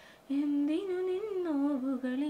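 A woman humming a slow, wordless tune, one held voice gliding gently up and down in pitch, starting about a quarter second in.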